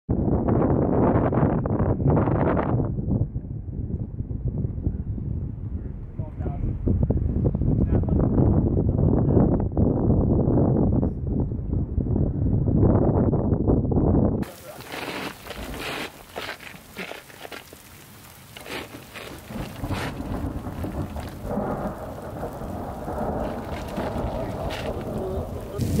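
Wind buffeting the microphone, a loud steady low rumble, for about the first half. It cuts off abruptly to heavy rain hissing and pattering on rock, with many drops striking close by.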